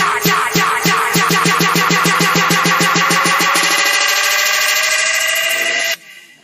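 Electronic music build-up: a drum roll that speeds up until the hits blur together, under a slowly rising tone, cutting off suddenly at the end.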